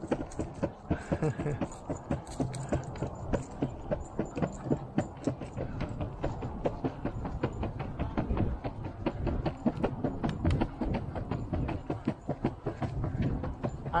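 Skateboard wheels rolling over a concrete sidewalk: a steady rumble broken by a quick, fairly regular run of clicks and clatters.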